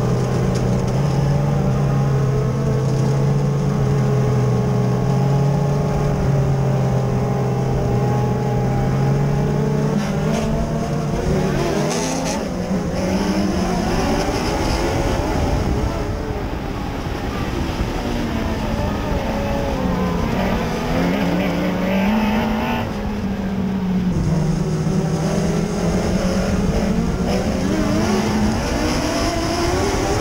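Mod Lite dirt-track modified race car's engine heard from inside the cockpit at racing speed. It holds a steady drone for the first twelve seconds or so, then its pitch repeatedly falls and rises as the throttle is lifted and reapplied around the track.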